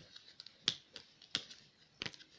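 Tarot cards being handled and drawn: two sharp clicks about two-thirds of a second apart, with a few fainter ticks around them.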